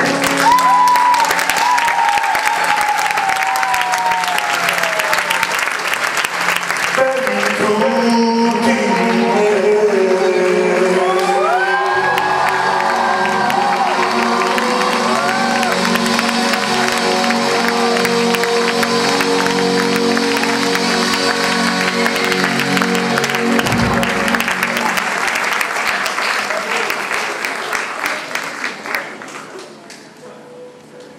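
Live band holding out the end of a song, a singer's voice gliding over sustained chords, with an audience applauding over it; the sound fades away near the end.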